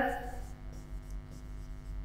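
Faint scratching and tapping of a stylus writing on an interactive whiteboard screen, over a steady electrical mains hum.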